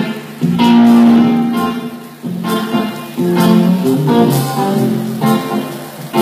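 Live band playing with a guitar to the fore, chords struck afresh every second or so.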